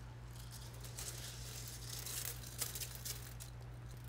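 Wet clay oil-dry granules and antifreeze sliding out of a tipped glass jar onto a steel tabletop, a faint granular pattering with a couple of light clicks.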